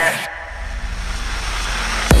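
Electronic dance music in a breakdown: the melody and beat stop about a quarter second in, the treble drops away, and a hissing noise riser swells steadily louder, building toward the drop.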